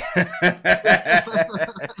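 Men laughing in short, quick repeated chuckles after a joke.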